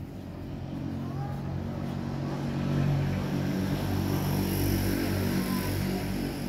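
A steady engine drone that swells over the first three seconds and then holds.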